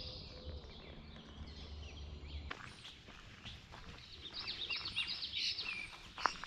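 Songbirds chirping outdoors: quick runs of short, high notes, thicker in the second half, over faint background ambience.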